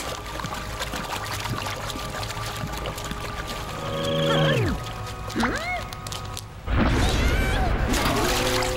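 Cartoon soundtrack: background music with held tones, a falling sound effect about four seconds in and short swooping effects just after. A loud rushing noise starts near the end.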